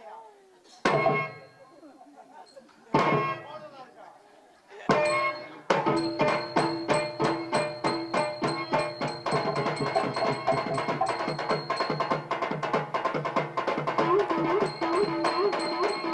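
Stage music on tabla. Three single ringing tabla strokes come about two seconds apart, and then from about six seconds in a fast dance rhythm starts up under a held melody.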